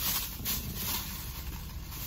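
Plastic bag rustling, over a steady low hum inside a parked car.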